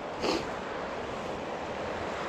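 Steady rush of flowing river water, with a brief short hiss about a quarter second in.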